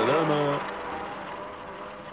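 A cartoon character's brief wordless vocal sound, falling in pitch, in the first half second. After that only a quiet soundtrack background with faint steady tones.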